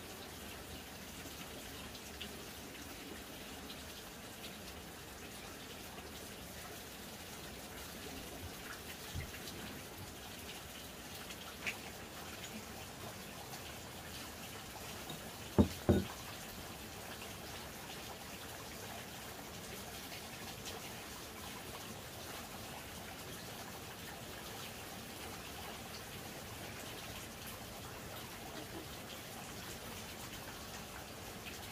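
Steady trickling water, with a few light clicks and two sharp knocks in quick succession about halfway through.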